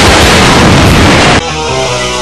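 A loud, dense blast of noise that cuts off abruptly about a second and a half in, giving way to quieter music with held notes.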